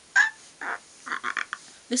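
Breathy, half-stifled giggling in short bursts, ending in a quick run of four or five short laughing breaths.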